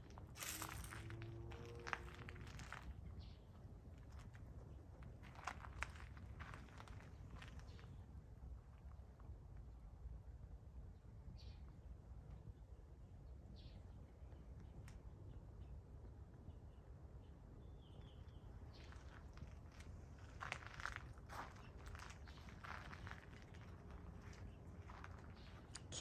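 Faint footsteps crunching on gravel, in scattered clusters near the start and again toward the end, over a low steady outdoor rumble. A few brief, faint high chirps sound in the quieter middle.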